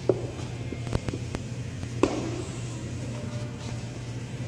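A few short knocks and thumps as a kettlebell is shifted and pressed against the calf, the two sharpest at the very start and about two seconds in, over a steady low hum.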